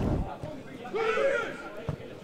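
A man's voice gives a short shout on a floodlit football pitch about a second in, with a single dull thud just before the end.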